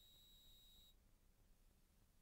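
Near silence, with only a very faint steady high whine that stops about a second in.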